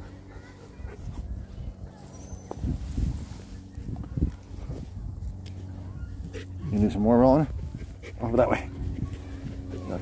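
A young Caucasian Ovcharka dog gives a wavering, whining vocal grumble about seven seconds in, followed by a shorter one a second later.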